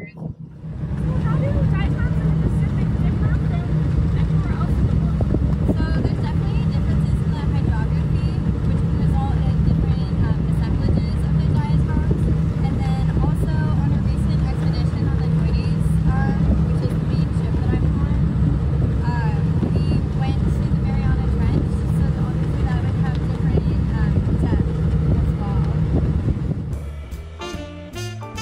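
Steady low drone of a vessel's engine, with wind buffeting the microphone on the open deck.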